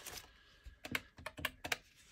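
Paper dollar bills being handled at a table, squared and set down into a stack: a quick run of faint, crisp paper clicks and taps in the middle.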